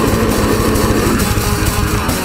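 Live death metal band playing: heavily distorted electric guitar and bass over rapid, dense drumming, loud and unbroken.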